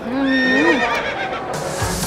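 Pop music playing: a singer holds a wavering 'ooh' that rises and falls in pitch. About a second and a half in, a dance beat with a heavy bass drum comes in.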